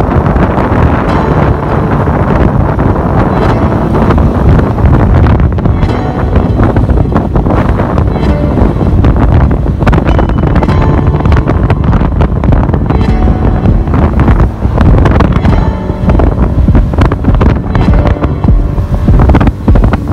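Heavy wind buffeting on the microphone of a moving motorcycle, with background music that becomes clearer in the second half.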